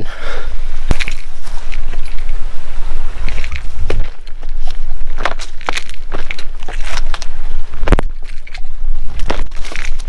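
Footsteps scrambling over rock and a log, with irregular knocks, scrapes and rustling, over a constant low rumble on the microphone.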